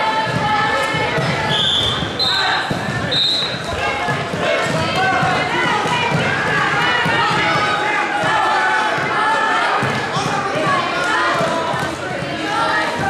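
Many voices calling out and talking at once in a large gym during a wrestling match, with repeated dull thuds as the wrestlers work on the mat. Three short high-pitched tones sound about two to three seconds in.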